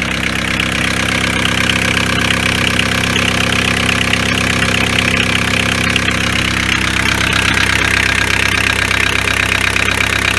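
The 1.9 litre ABL turbodiesel engine of a VW T4 van idling steadily on a test run, after a new alternator belt and coolant flange were fitted.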